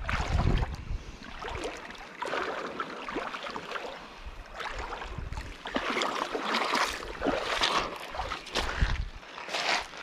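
Wind rumbling on the microphone over the splash and rush of shallow river water, coming in uneven bursts.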